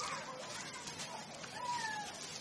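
A few short animal cries, each sliding up and down in pitch, over a faint steady hiss.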